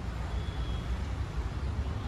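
Low, uneven outdoor background rumble, with a faint brief high tone about half a second in.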